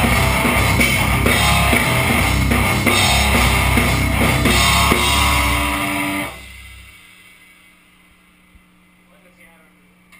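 Metal band playing a heavy riff on electric guitar and drum kit with cymbals, stopping abruptly about six seconds in and ringing out briefly. A low steady hum remains afterwards.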